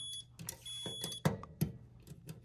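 Digital multimeter's continuity beeper giving two short high beeps, one at the start and one about two-thirds of a second in. It signals that the furnace's universal pressure switch has closed under suction on its hose.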